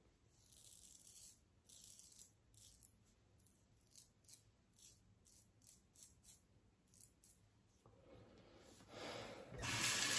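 Short scratchy strokes of a Paradigm Diamondback safety razor scraping thick stubble on the neck, roughly two a second. Near the end a tap starts running.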